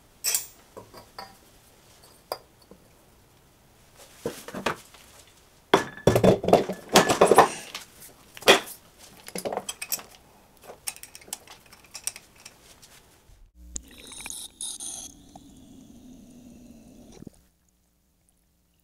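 An ice block being loaded into a metal pressure chamber and the chamber's end cap being fitted: scattered knocks and clinks, with a dense stretch of handling clatter partway through. Near the end comes a steadier noise lasting about four seconds that cuts off suddenly.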